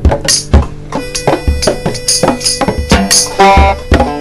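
A band playing: a drum kit with kick drum and cymbals under plucked string instruments.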